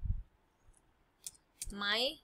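A few separate computer keyboard keystrokes clicking, a little past the middle, as a file name is typed. A soft low thump comes at the start and a short voiced sound near the end.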